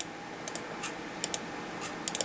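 A handful of light, unevenly spaced clicks from a computer keyboard and mouse, over a faint steady hiss.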